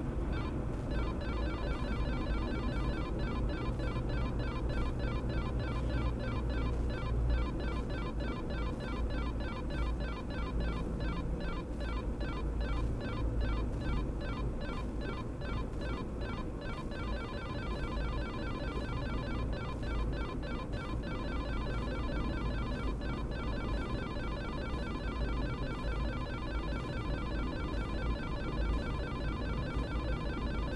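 Silverstone Sochi Z radar detector sounding its alert on a Cordon-M speed radar: a rapid run of electronic beeps repeating without a break, over the car's road and engine noise.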